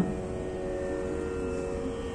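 A steady musical drone of several held pitches, unchanging, as a tuning reference sounding under the lecture.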